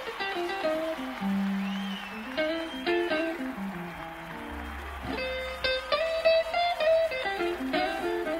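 Blues band instrumental intro with no singing: electric guitar lines with bent, gliding notes over a walking bass line.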